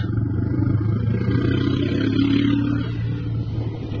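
A motor vehicle engine running close by, its note rising a little around the middle and then easing off, over a steady low hum.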